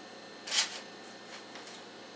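A short rustle of clothing being handled while dressing, about half a second in, followed by a few faint scuffs.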